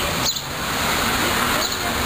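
Steady outdoor street noise, an even rushing haze with no clear pitch that dips briefly just after the start.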